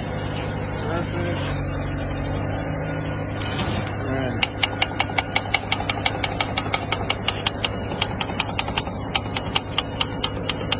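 Hand pump on a pressure-type concrete air meter being stroked to bring the chamber up to pressure. It clicks rapidly, about four strokes a second, from about four seconds in. Under it runs the steady low hum of the idling concrete mixer truck's engine.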